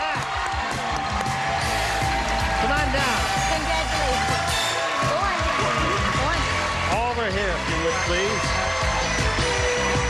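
Studio audience cheering and applauding, with many excited voices calling out at once over held notes of game-show music.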